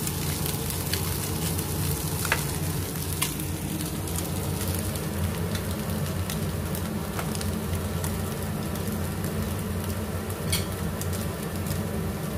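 Chopped egg, vegetables and fish sizzling in a nonstick frying pan over low heat while being stirred with a plastic spatula. A few light clicks of the spatula against the pan sound over a steady low hum.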